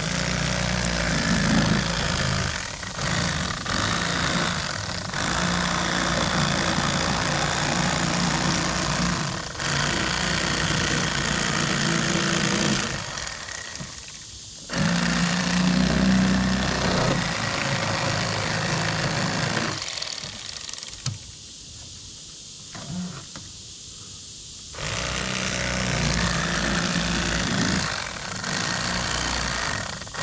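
Electric fillet knife running as it cuts a bluegill fillet, a steady motor hum in three long runs. It stops briefly about thirteen seconds in and for several seconds after about twenty seconds.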